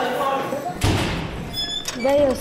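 A barred jail-cell gate banging with a heavy thud a little under a second in, followed by brief high metallic ringing clinks, over background voices.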